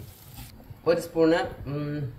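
A person speaking, after a short quieter pause at the start.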